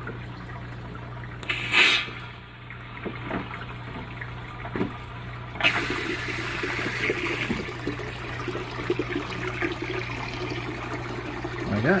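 Water from a pump-fed hose gushing and splashing into a fish tank through a red-handled ball valve, starting suddenly about halfway through and then running steadily. A brief loud rush comes about two seconds in.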